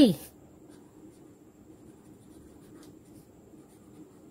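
Felt-tip marker writing on paper: quiet, scratchy strokes with small ticks as words are written by hand.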